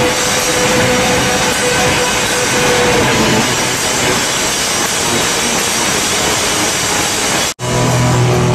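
Live noise-rock band playing very loud: a dense wash of distorted guitar noise and crashing drums and cymbals, overloading the recording into a hiss-like roar, with a held note that fades out about three seconds in. Just before the end the sound cuts out abruptly, and then the band comes back with heavy bass.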